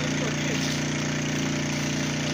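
Fire engine's pump engine running steadily at a constant pitch while it feeds a hose jet.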